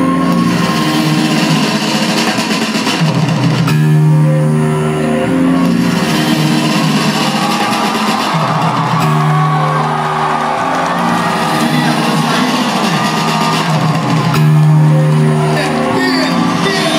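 Live hip-hop music played loud through a club PA and recorded from the crowd: a looped bass-heavy phrase that restarts about every five seconds, with voices over it.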